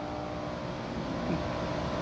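Steady low background room noise with a faint hum; the small speaker's test tone is not sounding.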